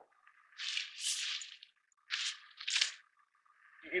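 Nylon fabric of a folded Wolfwise pop-up changing tent rustling and swishing in a few short bursts as the tent is lowered and laid flat on the ground.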